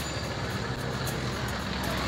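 Steady street traffic noise, with an auto-rickshaw running close by.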